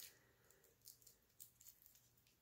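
Near silence, with a few faint ticks of thin cellophane wrap being worked off a plastic spool of bronze ball chain.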